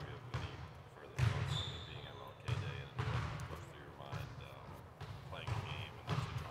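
Basketballs bouncing on a gym floor: irregular dull thuds, roughly one a second, over indistinct background voices.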